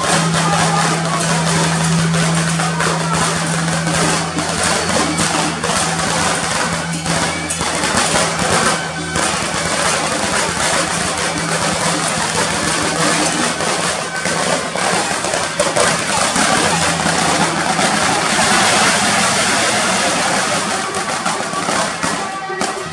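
Beiguan processional band playing: small hand cymbals clashing and a drum beating in a busy rhythm under suona shawms. A steady low hum runs underneath.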